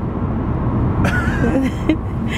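Steady low rumble of a car's engine and road noise heard inside the cabin, with a child's excited high-pitched voice breaking in about a second in.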